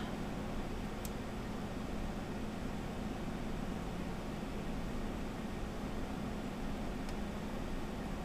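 Steady background hum and hiss, with a faint click about a second in and another near the end.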